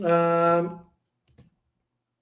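A man's drawn-out hesitation sound, a single held 'yyy' at one steady pitch lasting under a second, followed by a faint click about a second and a half in.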